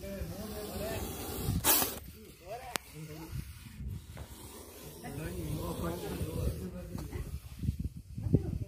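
Voices talking in the background, and one short, sharp hiss about two seconds in from a cobra with its hood spread in a defensive display.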